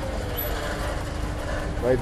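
Background film-score drone: a steady held low note with a second tone gliding slowly downward, over a constant low rumble.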